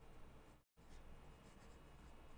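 Faint scratching of a pen writing on paper, with a brief dropout to dead silence just over half a second in.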